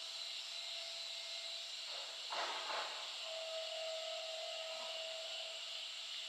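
Quiet outdoor ambience: a steady high drone and hiss, with a short breathy rush about two and a half seconds in.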